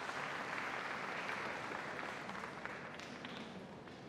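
Audience applauding, loudest about a second in and slowly fading away.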